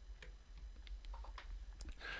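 Faint, scattered computer-mouse clicks, about five of them in two seconds, over a low steady hum.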